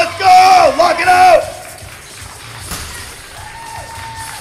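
Loud, drawn-out high yells during a barbell deadlift lockout, stopping about a second and a half in. Then quieter crowd noise, with a single thud near three seconds as the loaded barbell is set down on the platform.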